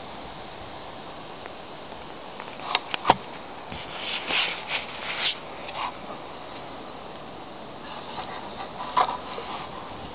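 A few light clicks and short bursts of scraping and rustling as a diecast model locomotive is handled on its plastic display base, over a steady outdoor hiss.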